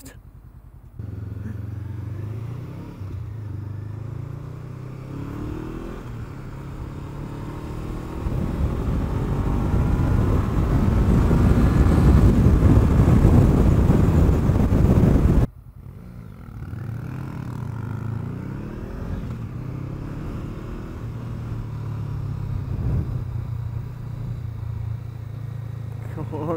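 Honda CBR500R's parallel-twin engine heard from the rider's seat while riding, pulling through the gears with rising pitch and a growing rush of wind that is loudest about halfway. It then drops abruptly to a quieter, steadier run with small rises and falls in revs.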